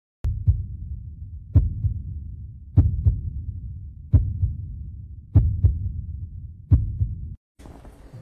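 Heartbeat sound effect: six slow double thumps (lub-dub) about 1.2 s apart over a low rumble, cutting off just before the end.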